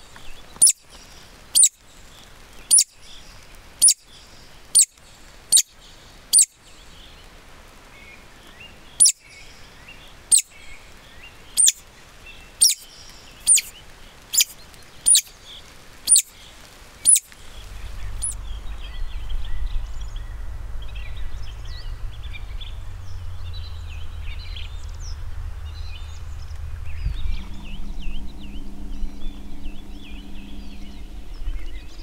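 Woodcock decoy call blown in sharp, very high, short squeaks, about one a second, in two runs with a short pause between, stopping a little past halfway. After that, small birds chirp faintly over a low steady rumble.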